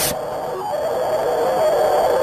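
A steady, noisy hum with a faint wavering tone in it and a thin high whine above.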